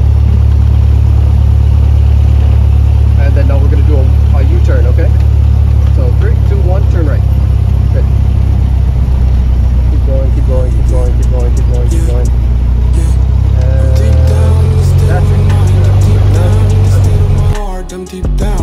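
Single-engine propeller plane's piston engine and propeller running with a loud, steady drone heard inside the cockpit, its note shifting about 14 seconds in. The drone cuts off suddenly near the end.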